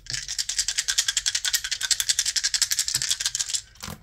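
Astrology dice shaken together in cupped hands: a fast, even clicking rattle, then a sharper clack near the end as they are let go onto the table.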